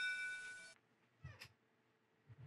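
Ship's bell sound effect ringing out, a set of clear bell tones fading and then cut off abruptly about three-quarters of a second in. A faint, brief meow-like call follows about a second later.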